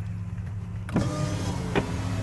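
A car's electric power window motor running as the side window glass is lowered, a steady hum, with outside noise growing louder about a second in.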